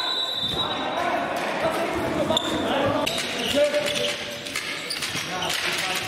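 Handball match play in a sports hall: the ball bouncing on the court among players' shouts, all with hall echo. There are short high squeaks near the start and again about two and a half seconds in.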